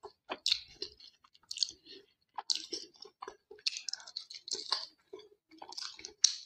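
Close-miked eating sounds: a person chewing mouthfuls of rice and chicken curry eaten by hand, a quick irregular run of short chewing clicks and smacks.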